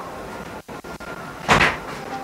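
A single short thud about one and a half seconds in, over a low steady background.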